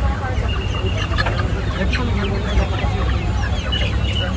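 Caged live chickens clucking, many short calls overlapping throughout.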